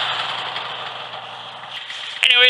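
Polaris Indy snowmobile's two-stroke engine running, its sound dying away steadily over the first second and a half.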